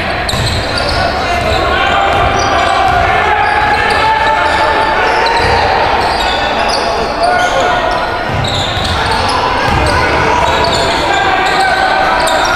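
Live basketball game in an echoing gym: sneakers squeaking in short, high chirps on the hardwood floor and the ball bouncing, over a steady hubbub of voices from players and spectators.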